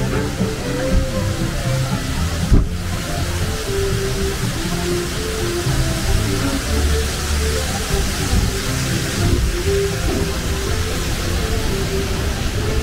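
Splash Mountain log flume: the attraction's background music playing over the steady rush and splash of water in the flume channel, with a single thump about two and a half seconds in.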